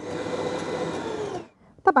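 Kenwood stand mixer running with its dough hook, kneading dough in the steel bowl: a steady motor hum that gets louder at the start, then winds down and stops about one and a half seconds in.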